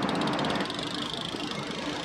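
Freewheel of a trifold folding bike ticking rapidly as the bike is wheeled away, fading out about halfway through, over a steady background hum.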